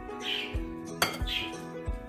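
A metal spoon stirring salad in a glass bowl, with a sharp clink of spoon against glass about a second in, over background music.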